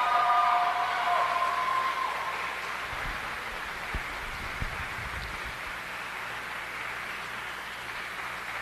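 Sparse audience applause that slowly dies down. The last held note of the program music fades out over the first two seconds, and a few dull thumps come in the middle.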